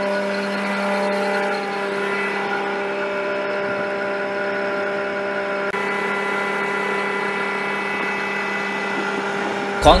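Military vehicle engine running steadily at idle, a constant-pitch hum that holds unchanged throughout.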